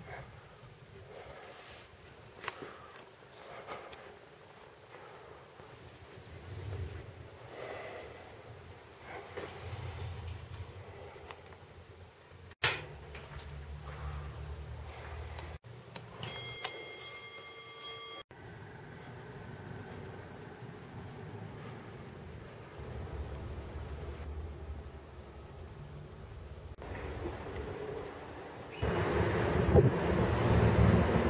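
Low indoor room noise with scattered light knocks and bumps, broken by several sudden cuts. Near the end a louder steady rush sets in, like wind on the microphone.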